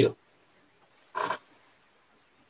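A man's voice breaking off over a video-call line, then silence broken by one short, rough sound about a second in.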